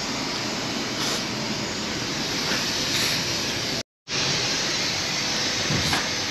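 Aerosol can of lubricant spraying onto a car's door hinges and latch in a steady hiss. The sound cuts out briefly just before four seconds in, then the hiss resumes.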